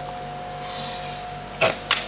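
Steady hum of a room air cooler, with a faint tone in it and no other sound until a short burst near the end.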